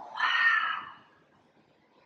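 A woman exhaling audibly for about a second, a breathy sigh that falls slightly in pitch as it fades.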